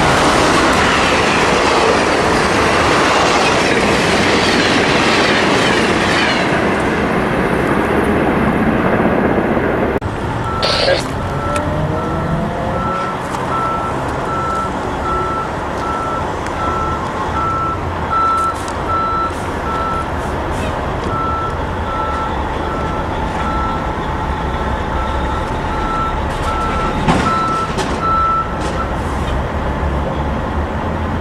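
Amtrak passenger cars rolling away on the rails, a loud steady wheel-and-rail rush that fades during the first ten seconds and then cuts off abruptly. After that comes a lower steady rumble with an electronic beep repeating about once a second until near the end.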